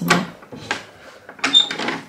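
A brass door knob being turned and a panelled door being opened, with several sharp clicks and knocks from the latch and door and a brief high squeak near the end.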